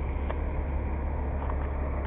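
Steady low hum under an even background hiss, with a faint click about a third of a second in and another near three quarters through.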